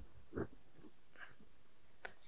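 Quiet room tone with one faint, short sound about half a second in.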